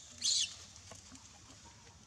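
A baby macaque's short, high-pitched squeal, once, about a quarter second in.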